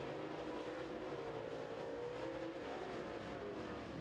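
Super Late Model dirt-track race cars' V8 engines running at speed down the backstretch: a steady, fairly faint engine drone whose pitch wavers slowly.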